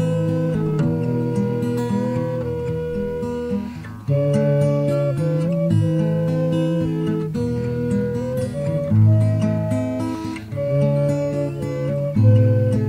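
Homemade PVC flute playing a slow melody of held notes over strummed acoustic guitar chords in a minor key, with a brief break in the phrase about four seconds in.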